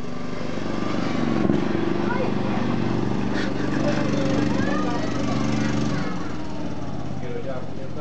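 Ride-on lawn mower engine running steadily as the mower is driven, with voices faintly over it. About six seconds in, the lowest part of the engine note drops away and it settles to a steadier, lower running sound.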